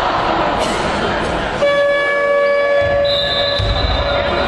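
A basketball scoreboard horn sounds one steady, flat tone for about two seconds over the noise of the hall. A higher, thinner tone joins near the end.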